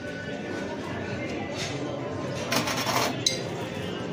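Glassware clinking as a glass blender jar is handled on a counter: a short rushing scrape about two and a half seconds in, then a single sharp, ringing clink.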